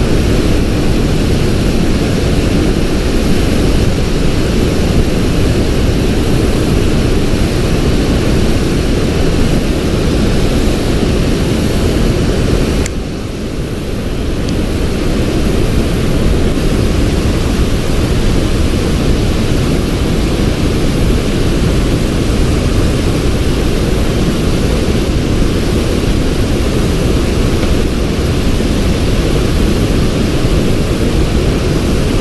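Wind buffeting the camera microphone: a steady low noise that dips briefly about halfway through and then builds back up.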